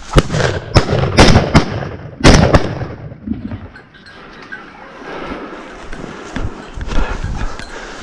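A shotgun fired in a rapid string of loud, sharp shots over the first two and a half seconds, then quieter rustling and movement.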